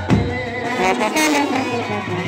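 Indian brass band playing a melody on brass horns over a drum, with a drum beat just after the start.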